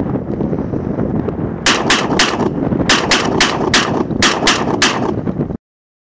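BR99 12-gauge semi-automatic shotgun fired rapidly, about ten shots in three quick strings, over a loud steady rumbling noise. The sound cuts off abruptly near the end.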